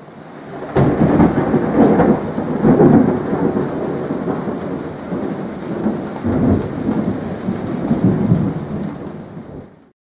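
Thunder breaking suddenly about a second in and rolling on in long rumbling swells over steady rain, fading out at the end.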